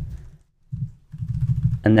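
Typing on a computer keyboard: dull key taps in short runs with brief pauses between them.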